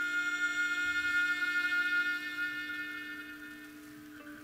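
Instrumental music: a long, high violin note held over a low steady drone and slowly fading away.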